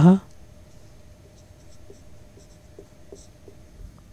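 Felt-tip marker writing on a whiteboard: a few faint short strokes.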